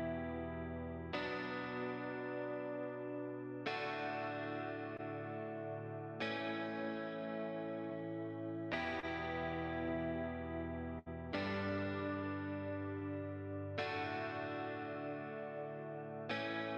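Guitar Pro 7 playback of a clean electric guitar sounding a simple chord progression, one chord struck and left ringing about every two and a half seconds. The sound drops out for an instant a little after the middle.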